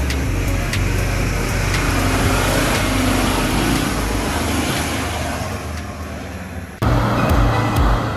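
A four-wheel-drive ute's engine working under load as it climbs a rutted dirt track and passes close by, louder in the middle as it goes past; background music with a steady beat cuts in abruptly near the end.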